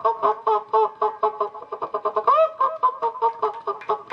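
Mimicry artist imitating poultry calls into a microphone: a fast, even run of short pitched calls, about seven a second, bending in pitch, heard through the stage sound system.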